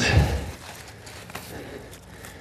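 A long-handled steel digging trowel levered against a hosta clump, a short crunchy burst of soil and roots giving way at the start, about half a second long.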